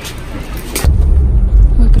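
Low, steady rumble of a car driving, heard from inside the cabin, starting suddenly a little under a second in after a short click; before it, a quieter open-air background.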